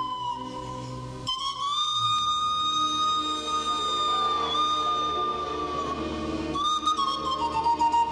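Background music: a slow melody of long held notes, each lasting a couple of seconds, over a soft accompaniment.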